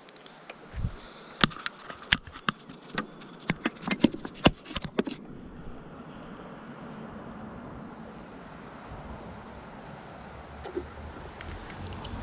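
A man chugging a can of beer. It opens with a quick run of sharp clicks and knocks as the can and the phone are handled, then a steady low rush of noise while he drinks it down without a pause.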